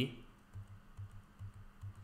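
A handful of faint, soft taps on a computer keyboard in quick succession.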